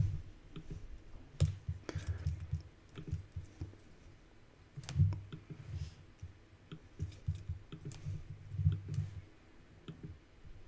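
Computer mouse clicking irregularly, with low thuds of the hand working on the desk.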